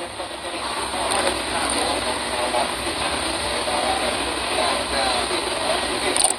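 Steady rushing background noise with faint, indistinct voices under it.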